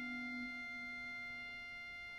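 The Great Organ, a pipe organ built by E.F. Walker (1863) and rebuilt by Aeolian-Skinner (1947), holding a soft sustained chord of pure, flute-like tones. Its lowest note thins out about half a second in, and the chord slowly gets softer.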